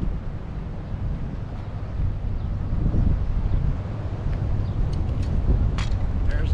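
Wind rumbling on the microphone, a steady low rumble with a few faint clicks near the end.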